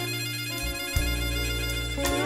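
Slow electric blues band playing an instrumental stretch between sung lines: sustained high lead notes over bass and drums, with a stroke about once a second.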